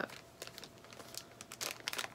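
Clear plastic packaging of a quilt label set being opened and handled, a run of short, irregular crackles.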